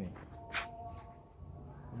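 A single short, sharp noise about half a second in, over a low steady background hum.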